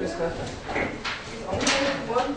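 Indistinct voices in a small room with shuffling, and near the end a short scrape as a chair is pulled across the floor.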